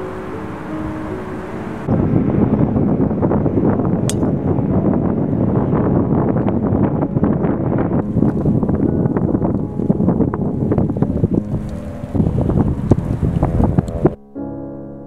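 Wind buffeting the camera microphone, loud and gusty, taking over once piano music cuts off about two seconds in. A single sharp click sounds about four seconds in.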